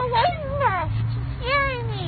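A young woman's high, wordless whining cries, several sliding up and then falling away in pitch. She is dazed after having her wisdom teeth removed.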